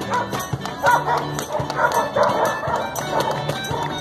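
Live acoustic street music: several acoustic guitars and small guitars strummed together over regular hand-drum beats.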